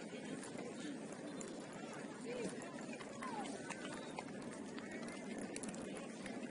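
Indistinct, distant voices of players and sideline spectators at a soccer game, over a steady hiss of open-air noise.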